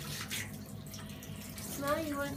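Steady spray of running water from a handheld shower head, hitting a wet puppy's coat and the bathtub floor.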